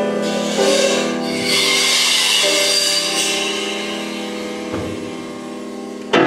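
Improvised piano-and-percussion music: held grand piano notes and chords, re-struck twice, under a high metallic shimmer of cymbals in the middle, with one sharp knock near the end as the sound fades.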